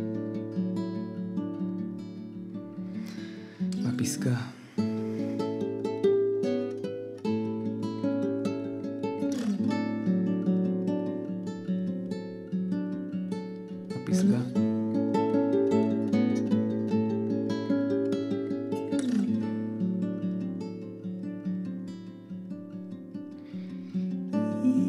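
Live acoustic guitar and keyboard music: sustained chords held steadily, with a sharp strummed chord about every five seconds.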